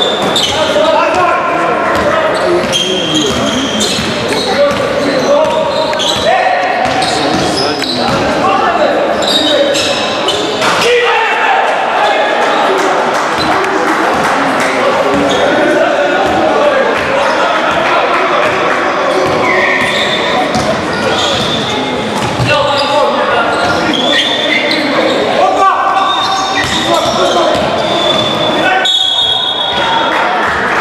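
Basketball game in an echoing gym: the ball bouncing on the court, with players and spectators calling out throughout.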